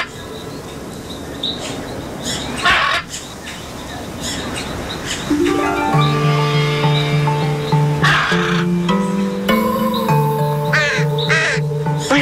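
A raven cawing several times, each call short and separate, over background music that comes in about halfway through.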